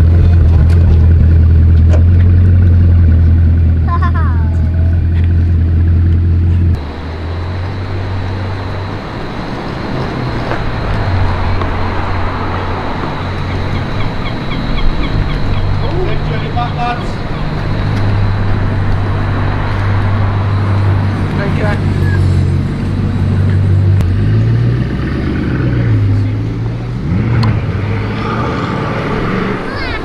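Bugatti Chiron's quad-turbo W16 engine idling loudly, heard close behind its exhaust, with a steady low hum. After a cut about seven seconds in, the engine is quieter as the car drives on the street, its pitch rising and falling with the throttle.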